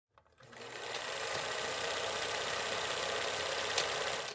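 Film projector running: a steady, rapid mechanical clatter that fades in about half a second in.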